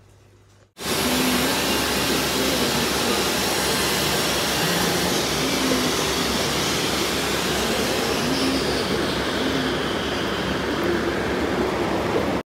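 Aquarium air pump driving a sponge filter, with air bubbling in the tank: a loud, steady rushing hiss that starts abruptly about a second in.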